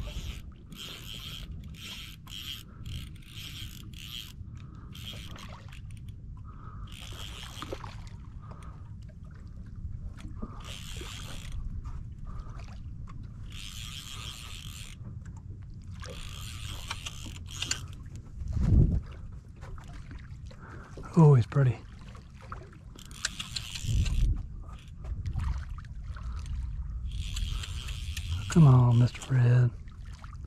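Fly line being stripped in through the rod guides in short pulls: a repeated rasping hiss, rapid at first and then every few seconds, over a steady low rumble of wind and water against the boat.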